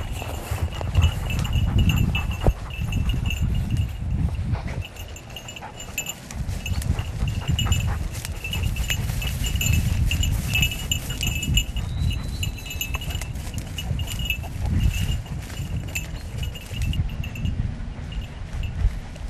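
A small bell on a hunting dog's collar tinkling in irregular bursts as the dog works through grass and brambles, falling quiet near the end. Underneath, a steady low rumble and rustle of wind and vegetation.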